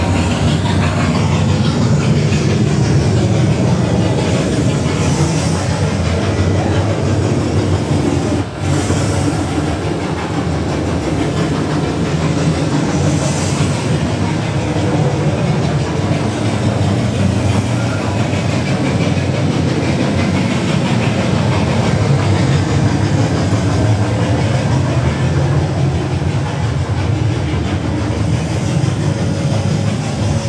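Loud, steady rumbling and clattering ambience from a haunted walk-through maze's sound effects, with one brief dip about eight and a half seconds in.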